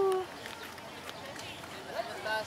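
The tail of a woman's long "woohoo" cheer, sliding down in pitch and ending just after the start. Then faint background voices.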